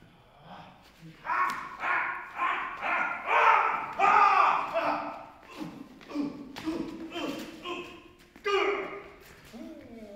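Actors shouting and grunting in short wordless bursts, about two a second, during a staged fistfight, with a louder cry near the end. Scattered thumps of feet and blows on the stage come in between.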